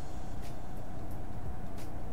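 Steady low background hum with a few faint, short clicks.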